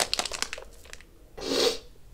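Plastic candy bag crinkling as it is handled: a run of sharp crackles at the start, then a shorter, louder rustle about a second and a half in.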